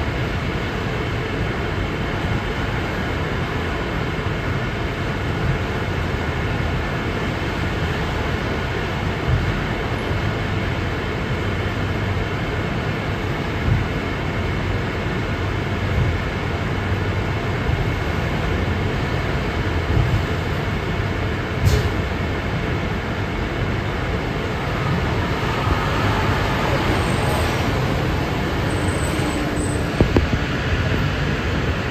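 Cabin noise inside a 2006 New Flyer city bus standing at a stop: a steady low rumble with faint steady tones, and passing cars outside. There is a sharp click about two-thirds of the way through, and the sound grows louder near the end as the bus gets moving again.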